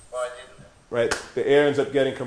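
A man speaking in short phrases, with one sharp click about a second in.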